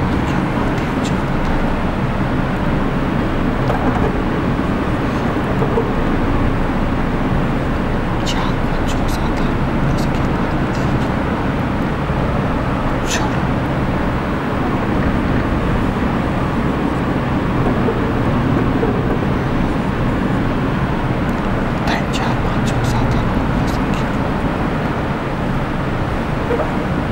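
Marker writing on a whiteboard, with a few short, thin squeaks of the tip about a third and a half of the way in and again near the end, over a steady, loud background noise.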